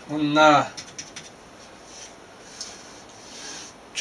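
A man's short, drawn-out hesitation sound in his voice just after the start, then quiet room tone with a few faint clicks.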